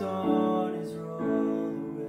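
Casio Privia digital piano playing sustained chords, a new chord struck three times.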